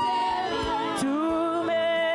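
A woman singing a Swahili gospel worship song into a microphone, her voice holding long notes and sliding between pitches.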